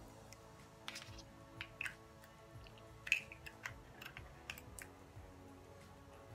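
Faint background music with a scatter of light clicks and taps as a small glass makeup jar and a brush are handled, the product being scooped out.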